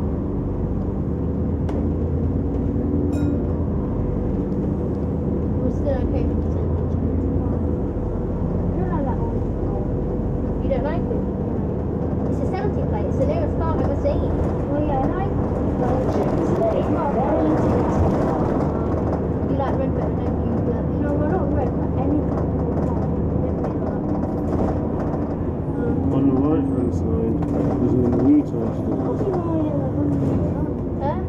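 Interior sound of a double-decker bus on the move: a low engine drone with a steady hum, the drone easing off about a third of the way in, and voices chatting in the background. The whole track is pitched down, so everything sounds deeper than it was.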